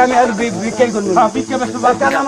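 A man's voice talking, over a steady hiss.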